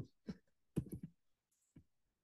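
Faint clicking at a computer, a short cluster about a second in and a single click near the end, as a link is copied and pasted into a chat.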